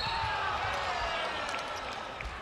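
Arena sound of a basketball game: crowd noise and the ball bouncing on the court. A short, high referee's whistle sounds right at the start, calling a foul on the drive to the rim.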